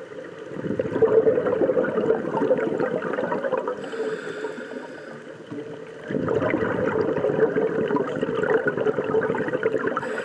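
Scuba diver breathing through a regulator, heard underwater: two long bursts of exhaled bubbles, one starting about half a second in and lasting about three seconds, the next starting about six seconds in, with a quieter pause between for the inhale.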